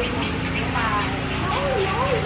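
People talking in the background, not close to the microphone, over a steady low hum.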